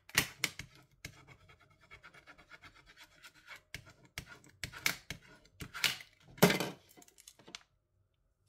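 Plastic scraper tool rubbed hard over transfer tape and vinyl on a small wooden cutout, burnishing the vinyl down: a run of short, uneven scraping strokes, quieter for a couple of seconds in the middle and stronger again after.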